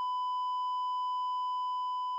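A continuous electronic beep, one steady high tone held without a break, like a heart monitor's flatline.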